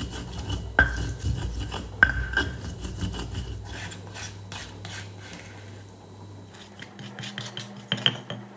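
Stone pestle grinding red chilies and salt in a volcanic-stone mortar (cobek and ulekan): gritty rubbing with two sharp stone-on-stone knocks about one and two seconds in. Then softer scraping as a silicone spatula gathers the paste, and near the end a quick run of clicking knocks as the pestle goes back to work.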